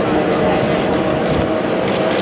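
Engines of a queue of classic cars idling steadily, with people talking among them.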